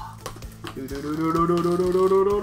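A box cutter scoring through packing tape on a cardboard box, faint scratchy clicks, then from about a second in a voice holds one long humming note.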